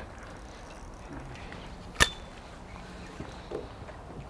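A single sharp knock about halfway through, with a brief thin ringing after it, over a faint steady background.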